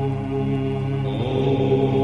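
Om chanted by several voices, held as a steady droning hum with layered pitches; another voice swells in about a second in.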